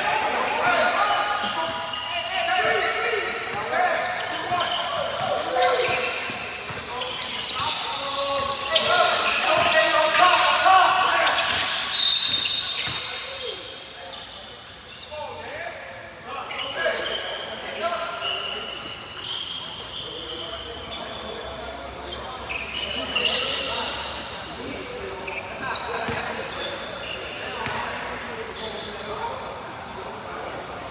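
Youth basketball game in a reverberant gymnasium: players and spectators calling out, a ball bouncing on the hardwood floor, with a short referee's whistle blast near the middle, after which the voices drop.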